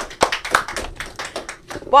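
A quick, irregular run of sharp taps and clicks.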